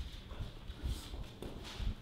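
Footsteps and scuffing on gym artificial turf as a man moves after a small dog, a few scattered thuds.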